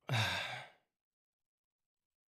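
A man's brief sigh, under a second long, right at the start.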